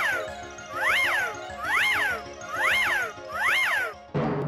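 Edited-in tinkling sound effect: a rising-then-falling chime-like glide, repeated five times about once a second over a steady low note.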